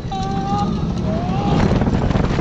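Mack Rides hyper coaster train running at speed on its steel track: a steady rumble with wind buffeting the chest-mounted camera. Riders give two short cries over it, one held just after the start and a second rising in pitch about a second and a half in.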